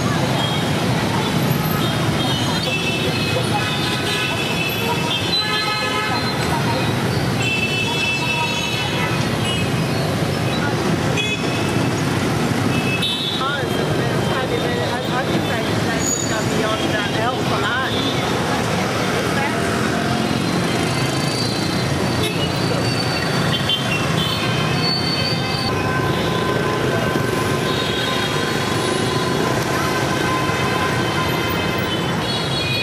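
Dense motorbike and car street traffic running steadily, with many short horn toots sounding again and again throughout.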